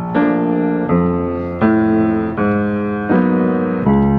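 Acoustic grand piano played in a slow stride pattern: low bass notes and mid-range chords struck in turn, a new stroke about every three-quarters of a second, each left to ring.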